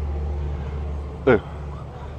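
Steady low hum of traffic and vehicle engines, easing off a little after about a second and a half.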